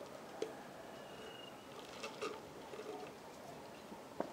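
A drink being gulped quietly from a plastic shaker cup: a few faint swallows and soft knocks against low background hiss.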